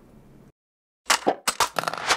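Short title jingle: about a second in, a quick run of sharp percussive hits starts along with a voice calling 'word'.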